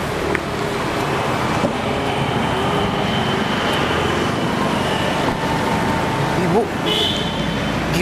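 Steady road traffic noise, an even rush of vehicle sound with faint voices beneath it.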